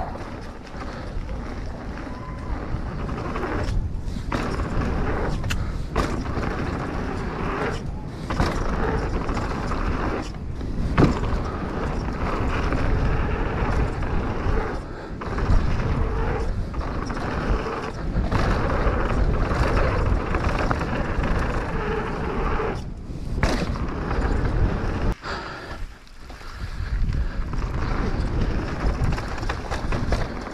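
Mountain bike descending a dirt and gravel trail, heard from a camera on the bike or rider: tyres rolling and crunching over loose ground, the bike rattling and knocking over bumps, and wind rushing over the microphone.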